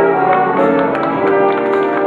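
Live jazz big band music, with quick struck notes over a held lower note.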